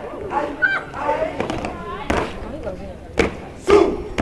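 Step-show performers and onlookers shouting and calling out, with a few sharp hits from the stepping in the second half. The loudest hit comes near the end together with a shout.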